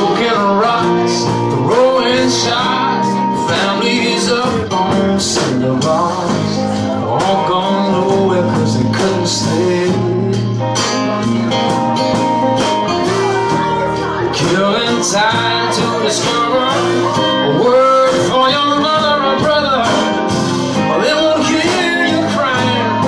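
Live band playing an original song: a strummed acoustic guitar, a second guitar and drums, with a melody line that bends and slides in pitch over the steady chords. No clear words are sung in this stretch.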